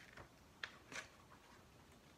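Faint rustle of a picture book's paper page being turned, heard as three short crackles within the first second.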